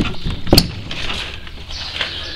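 Two sharp wooden knocks about half a second apart, then a soft steady hiss, as a door of the wooden chicken coop is opened.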